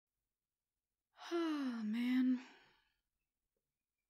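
A woman's voiced sigh, about a second long, starting about a second in, dipping in pitch and trailing off.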